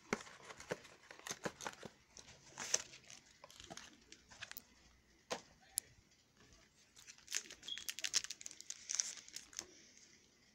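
Plastic trading-card pack wrappers being handled and torn open by hand: irregular crinkling and tearing with sharp little crackles, busiest in the first few seconds and again near the end.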